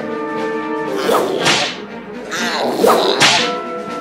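Cartoon whip-crack sound effects, twice, about a second and a half apart, over background music.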